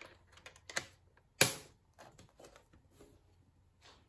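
Light clicks and taps of craft tools being handled on a tabletop, starting with a plastic bone folder being slotted into a scoring board, and one sharper, louder knock about a second and a half in.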